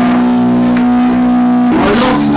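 Live band music at loud volume, a chord held steady and ringing, with the music moving on near the end.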